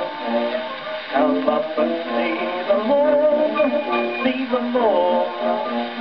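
An early 78 rpm gramophone record of an Edwardian music hall chorus: a male singer with orchestral accompaniment.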